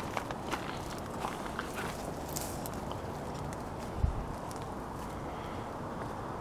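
Faint rustling of fig leaves and light steps through the garden, with scattered soft clicks and one dull low thump about four seconds in, over a steady low outdoor rumble.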